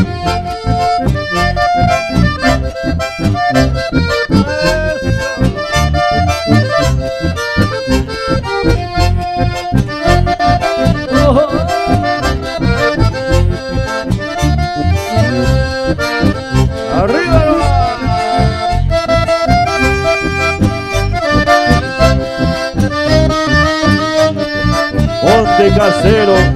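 Live chamamé band playing an instrumental passage led by accordion melody, over a steady low bass beat.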